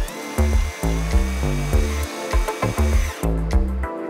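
A cordless drill-driver whines steadily as it drives a screw into a drawer bracket, stopping about three seconds in. Electronic background music with a heavy, steady beat plays over it and is louder.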